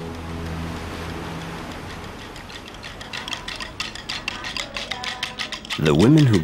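Soundtrack music with long held tones fades out over the first two seconds. From about two and a half seconds in, a fast run of dry percussion clicks builds and grows louder: the percussion accompanying a traditional Comorian women's song and dance.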